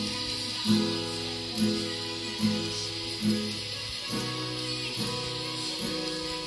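Acoustic guitar strummed, one chord stroke a little less than once a second, each chord ringing on between strokes, with a change of chord about four seconds in.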